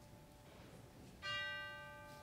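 Quiet music from a struck instrument: a single full chord sounds about a second in and rings, fading slowly, with the tail of an earlier chord dying away before it.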